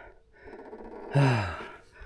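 A man breathing out hard, then a long sigh that falls in pitch: he is out of breath after a steep mountain-bike climb.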